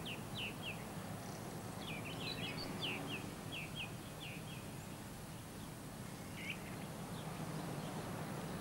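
A bird chirping in short high calls: three quick chirps at the start, a rapid run of chirps about two seconds in, and a single chirp near the end, over a steady low hum.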